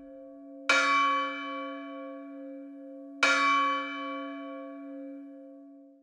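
A church bell struck twice, about two and a half seconds apart. Each stroke rings on with a long fading hum.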